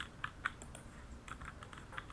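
Computer keyboard typing: a quick run of irregular keystroke clicks, fairly quiet.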